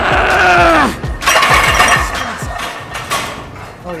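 A drawn-out strained shout falling in pitch during a failed heavy bench-press rep, then the loaded barbell clanking metallically back onto the rack. Background music with a steady beat runs underneath.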